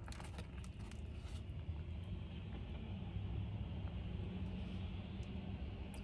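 Steady low hum inside a parked car's cabin, with a few faint clicks in the first second and a half.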